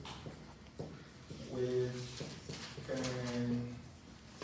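A man's voice twice holding a drawn-out sound, each about half a second long, over the light scratching of a marker writing on a whiteboard.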